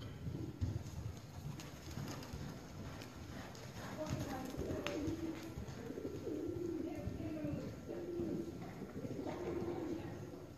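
A horse cantering on soft indoor arena footing, its hooves landing as dull thuds, with a run of short, low, steady-pitched calls from about four seconds in.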